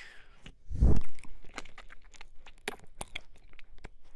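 Wet mouth sounds close against the silicone ear of a 3Dio binaural microphone: a steady stream of small, sticky clicks and smacks from licking and nibbling the ear, with one louder, deeper burst about a second in.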